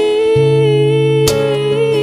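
A woman's voice holding one long sung note over an acoustic backing track, the note wavering slightly near the end, with a single guitar strum about a second and a quarter in.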